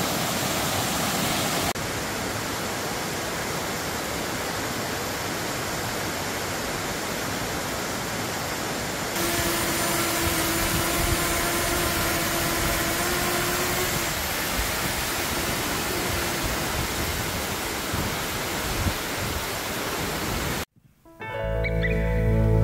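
Waterfall rushing steadily over rock into a pool. For a few seconds around the middle, a small DJI Mini 2 SE quadcopter drone hovering close by adds a steady propeller whine. Near the end the sound cuts out abruptly and music begins.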